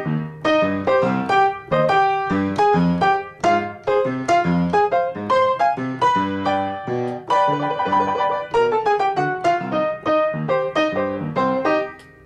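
Piano played with both hands: a melody over left-hand octaves filled out with the rest of the chord. There is a rapid trill about eight seconds in, then a falling run, and the playing stops at the end.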